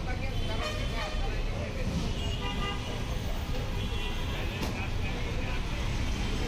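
Busy street ambience: a steady rumble of road traffic with voices around, and a vehicle horn tooting about two seconds in.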